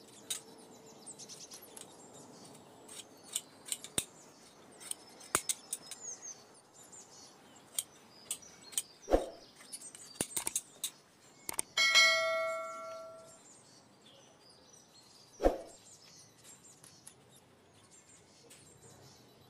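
Handwork on leather: scissors snipping and leather being handled, with scattered sharp clicks. Two heavy thumps come about halfway through and near the end, and between them a single metallic clang rings and dies away over about a second and a half.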